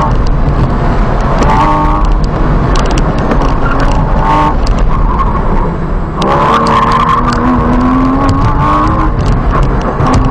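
A 2014 Porsche Cayman S's flat-six engine running under load, heard from inside the cabin, with the tyres squealing as the car corners at the limit of grip: briefly twice early, then in one long stretch from about six seconds in until near the end.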